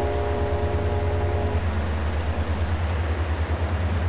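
Diesel engine running as a low, steady rumble with a fast, regular pulse. A steady horn note sounds over it for the first second and a half, then stops.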